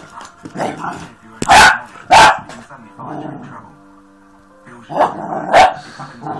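Spaniel puppy barking in short, sharp barks: two about a second and a half in and two more near the end. These are wary, alarmed barks at an unfamiliar object.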